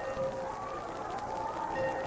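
Arena crowd noise during a ringside brawl, with a steady high-pitched whine running underneath and a single rising-and-falling call in the second half.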